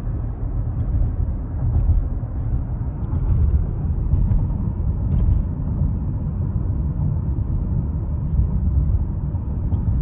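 Steady low road and engine rumble of a car driving along a town street, heard from inside the cabin, with a few faint ticks.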